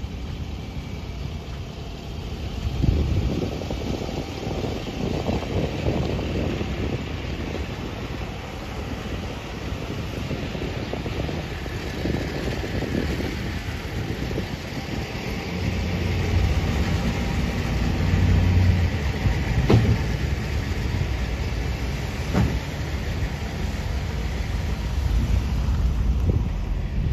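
Road traffic rumbling steadily, growing louder past the middle, with a couple of short sharp knocks near the end.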